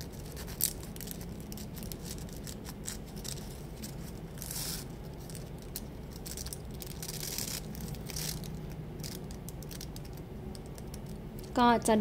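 Plastic gift ribbon crinkling and rustling in the fingers as its end is threaded under a loop and pulled snug. There are small clicks throughout, a sharper one about half a second in, and a couple of longer rubbing swishes in the middle, over a low steady hum.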